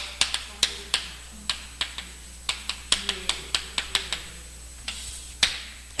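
Chalk writing on a chalkboard: an irregular run of sharp taps and short scrapes, several a second, as characters are written, with one longer scraping stroke near the end.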